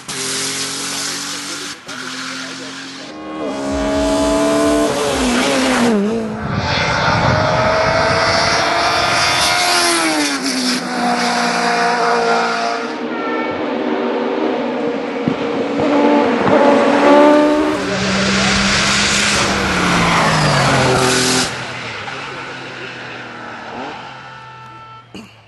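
Race car engines at full throttle on a hillclimb course, the engine note climbing through the revs and dropping sharply several times as gears change. The cars pass loud and close, and the sound fades away near the end.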